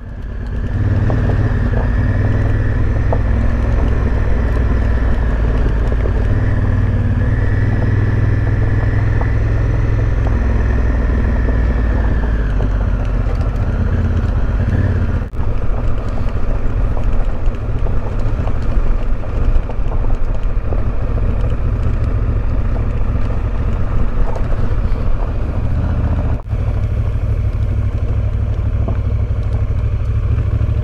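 Honda CRF1000 Africa Twin parallel-twin engine running steadily under way, low-pitched and constant, as heard from a camera mounted on the moving motorcycle. The sound drops out very briefly twice, about halfway through and again near the end.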